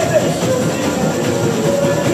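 Samba school bateria playing a fast samba with dense drum and tamborim rhythm, a sung melody carried over it.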